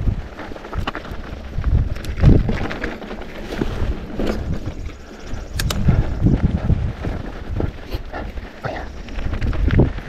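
Mountain bike ridden along a dry dirt singletrack: the tyres rumble over dirt and small stones, with irregular clicks and knocks from the bike rattling. Wind buffets the microphone.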